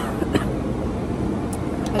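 A young woman coughs briefly into her hand, with sharp short sounds near the start. Underneath is the steady background noise of a large dining hall.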